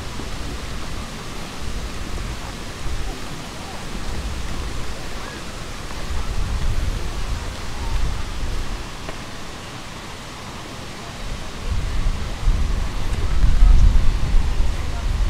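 Wind buffeting the microphone: an uneven low rumble that swells and fades, loudest near the end.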